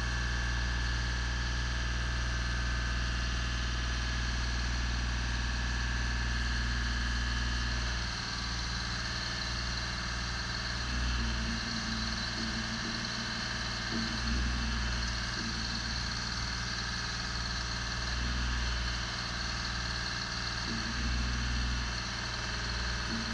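The engine of a Genie Z-62/40 articulating boom lift, a diesel, runs steadily. About eight seconds in the sound changes and becomes uneven, swelling and dipping with an on-off hum while the boom is being moved.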